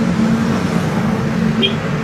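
Road traffic noise with a motorcycle passing close by, its engine a steady hum that fades during the first second.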